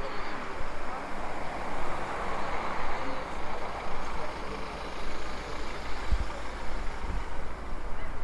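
Street traffic: vehicle engine and tyre noise from the road alongside, swelling about two seconds in, with some low thumps later.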